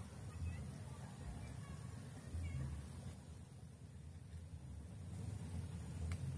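Quiet outdoor ambience: a low, uneven rumble, with a few faint short high chirps in the first second.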